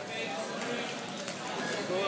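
Scattered voices of spectators in a gymnasium, with a few light knocks about halfway through.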